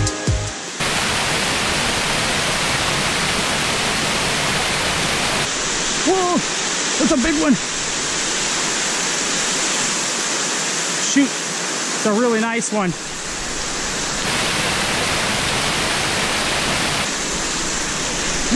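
Small waterfalls pouring over rocks into a pool: a steady rush of falling water. Music cuts off about a second in, and a few short vocal sounds come through the water noise midway.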